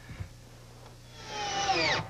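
Electric drill driving a two-inch wood screw, starting about a second in; its motor whine falls in pitch as the screw bites and seats.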